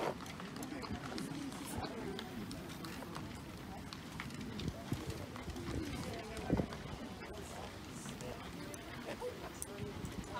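Low murmur of voices and scattered small clicks and knocks as a band clips sheet music to its music stands between pieces, with one louder knock about six and a half seconds in.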